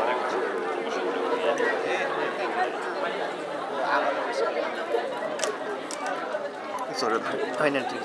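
Several people talking at once, a babble of overlapping voices, with a few short sharp clicks in the second half.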